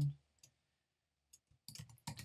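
Computer keyboard keys typed one at a time: a few separate light clicks, sparse at first and coming faster near the end.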